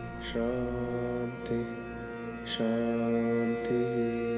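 Background music with a mantra chanted in long held notes. There are two phrases, each opening with a breathy consonant: one about a third of a second in and one about two and a half seconds in.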